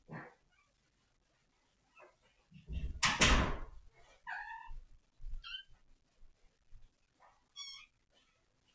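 A loud bump with rustling about three seconds in, then a kitten meowing three times in short, high calls, the last one wavering near the end.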